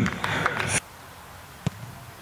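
Shouts from players and onlookers just after a penalty kick, cut off abruptly under a second in. Then quiet open-air ambience with a single short click.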